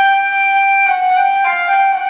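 Concert flute playing a loud, sustained high note that starts suddenly, dips slightly in pitch just under a second in, then thickens as extra tones sound between its overtones, a demonstration of an extended technique on the G and F natural notes.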